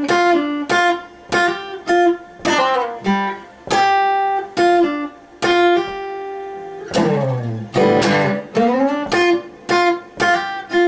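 Acoustic guitar playing a blues riff in G, picked notes about two a second that ring on, with pull-offs and slides. Near the middle of the riff a long slide runs down the neck and back up.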